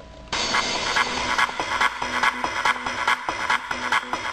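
Electronic dance track with a steady beat, starting abruptly about a third of a second in after a brief lull.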